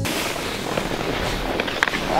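Snowboard sliding and scraping over hard-packed snow with wind on the microphone: a steady hiss, with a few sharp clicks near the end.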